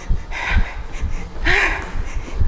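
A woman breathing hard with audible huffs while doing jumping jacks, with dull thuds of her sneakers landing on the floor about twice a second.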